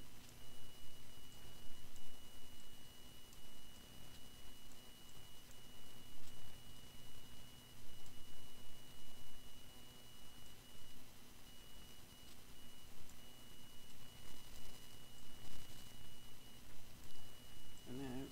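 Recording background noise: a steady low electrical hum and a thin, steady high whine over hiss, with uneven low rumble.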